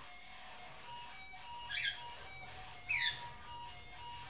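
A pet parrot gives two short whistled calls, about two and three seconds in, the second sliding down in pitch. Under them an electric guitar sustains long notes through effects pedals.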